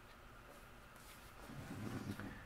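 Quiet room tone, with a faint low rustle of handling near the end.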